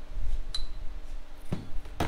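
Bent steel tube link bar being handled and set down on a steel fabrication table: a faint click about half a second in and a knock about one and a half seconds in, over low handling rumble.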